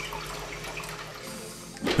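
Toilet water running in a steady rush, easing off slightly near the end.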